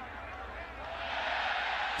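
Stadium crowd noise, a steady haze of many voices that swells a little in the second second, with faint indistinct voices in it.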